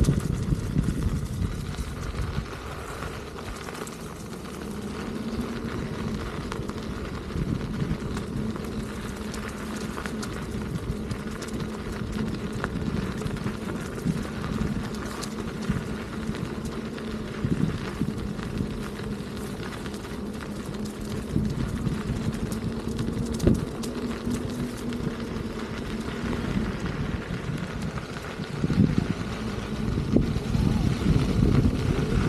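Begode Master electric unicycle being ridden along a gravel and dirt trail: rolling tyre noise and rumbling wind on the microphone over a steady low hum, with a few sharp knocks from the gravel, one louder about two-thirds of the way through.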